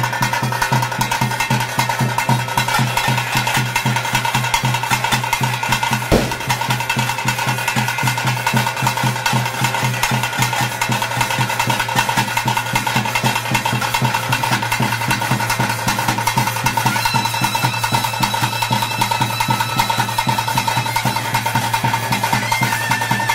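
Ritual drumming for a bhuta kola dance: fast, even strokes on a rope-laced barrel drum and a stick-beaten drum, under a steady high held tone. One sharp, loud crack stands out about six seconds in.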